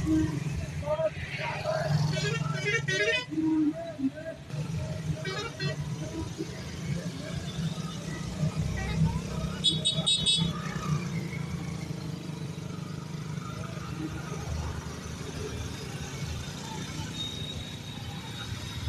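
A procession of motorcycles and scooters riding slowly past, their engines running in a steady low hum. Horns beep briefly a few times, about two, five and ten seconds in, over people's voices.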